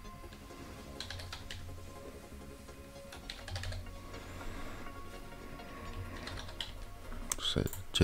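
Typing on a computer keyboard: a few short runs of keystrokes, over quiet background music.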